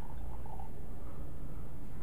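Red wine poured from a bottle into a wine glass, a faint trickle in the first half-second, over a steady low room hum.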